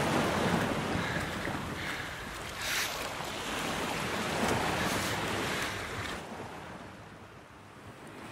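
Ocean surf breaking on a beach, with wind, swelling a few times and fading away over the last two seconds.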